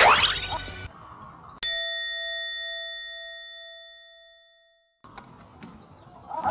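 A falling whoosh sound effect. About a second and a half in, a single bell chime is struck once and rings out for about three seconds before the sound cuts out. It is an edited-in comic 'flop' sting over a failed attempt.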